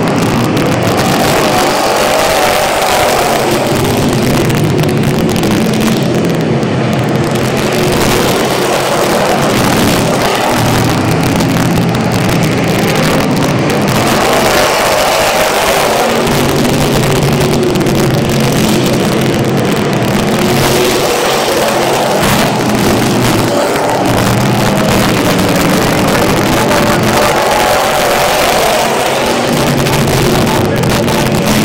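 Several street stock race cars' engines running hard under racing throttle, their pitch rising and falling and the sound swelling and fading every few seconds as the cars pass.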